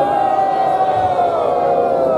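Rally crowd shouting in response: many voices held together in one long call that trails downward near the end.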